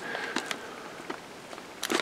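Faint crinkling of a clear plastic bag around a model-kit sprue as it is handled: a few soft, scattered ticks over low room noise.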